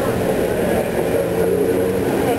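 Steady drone of a vehicle engine running, with a constant low hum, under faint voices.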